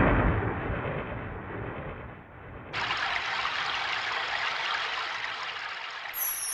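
Electronic noise effects of a DJ-style track: a booming hit that fades over about two seconds, then a steady hiss that starts suddenly about three seconds in.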